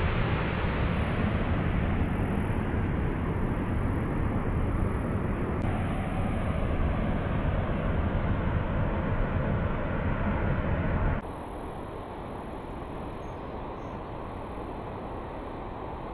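Wind buffeting the microphone: a steady rushing rumble that drops suddenly to a quieter hiss about eleven seconds in.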